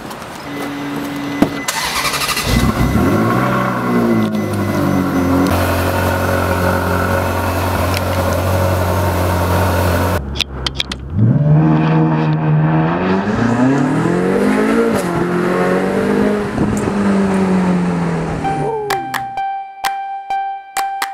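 Ferrari sports car engine starting about two seconds in and settling to a steady idle, then revved several times, its pitch rising and falling, before fading near the end.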